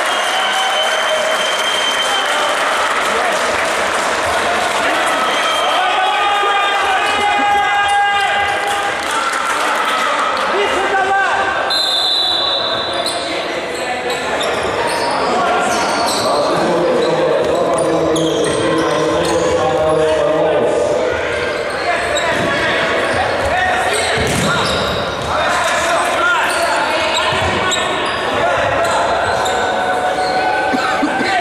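Futsal game sounds in a large sports hall: the ball being kicked and bouncing on the wooden floor, with players' voices calling out, all echoing in the hall.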